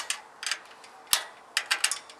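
A nut being tightened onto an aluminium bolt through an aluminium greenhouse frame: scattered sharp metallic clicks, the loudest just over a second in and a quick run of them near the end.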